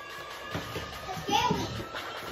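Faint voices, a child's among them, speaking quietly.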